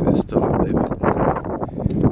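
A man's voice speaking briefly outdoors, over a constant rush of wind on the microphone.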